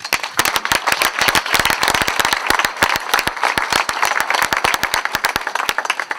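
Audience applauding: dense, loud handclaps that thin out near the end.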